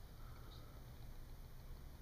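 Very quiet room tone: only a faint, steady low hum, with no distinct sound events.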